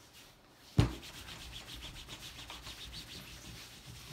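Two t-shirts being rubbed hard against each other by hand, a steady quick swishing of cloth on cloth, meant to transfer fibres from one fabric to the other. About a second in there is a single sharp thump.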